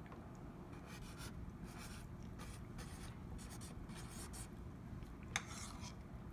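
Sharpie marker writing on a cardboard cereal box: faint, short scratchy strokes of the felt tip, with one sharper tick near the end.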